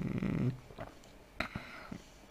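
A man's breath in a pause between phrases: a soft, breathy sound in the first half second. It is followed by a short mouth click about a second and a half in.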